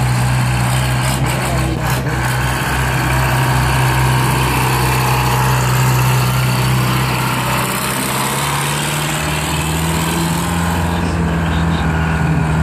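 Old rusted dump truck's engine running at a steady idle, then rising in pitch about two-thirds of the way through as the truck pulls away.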